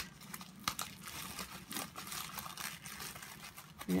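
Crinkling and rustling of a plastic bag and ribbon being handled, a run of irregular small crackles with a sharper click at the start.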